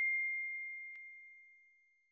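The fading ring of a notification-bell 'ding' sound effect: one clear high tone dying away and gone by about a second and a half in, with a faint click about a second in.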